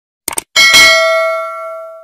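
Subscribe-button animation sound effect: a quick double mouse click, then a bright bell ding that rings and fades away over about a second and a half.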